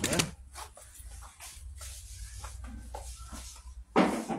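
A man's brief 'eh?' at the start, then quiet room noise: faint scattered voices in the room over a steady low hum.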